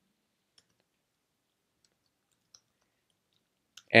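A few faint, widely spaced computer keyboard key clicks as code is typed, in an otherwise quiet room.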